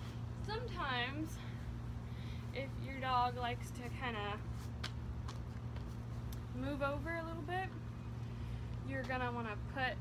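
A woman's voice in four short, high-pitched phrases, with a steady low hum underneath throughout.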